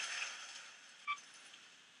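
Electronic sound from a Max MSP patch driven by an ultrasonic distance sensor. A hissing, crackling texture fades out in the first half second, then a single short beep sounds about a second in.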